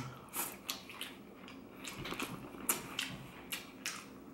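Close-miked chewing of a mouthful of crispy-skinned fried chicken and fried shallot rice: irregular crunches, about two or three a second, with soft wet mouth sounds.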